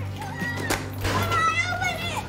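Young children shouting and squealing in high, sliding voices, mostly in the second half, over a steady low hum.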